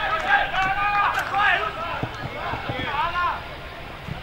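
Men shouting calls across a football pitch during play. The voices are unclear and overlapping, and some are distant.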